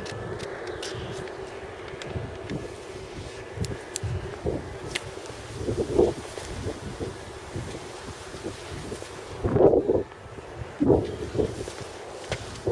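Wind noise on the microphone of a handheld camera being carried outdoors, with a few louder handling bumps about halfway through and again near the end.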